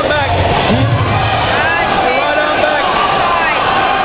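Many overlapping voices of spectators and coaches talking and shouting, none of them clear, with a low rumble during the first second or so.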